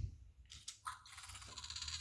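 Fingerlings Untamed raptor toy answering a hand clap with a faint electronic creature sound from its small speaker, starting about a second in.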